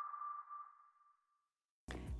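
The closing note of the intro music, a single ringing tone that fades away over about a second and a half after the music cuts off.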